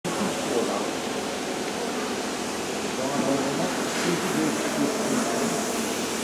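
Indistinct voices of people talking at a distance over a steady background hiss, louder around the middle.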